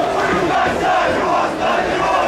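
Football stadium crowd shouting and chanting together, a steady mass of many voices.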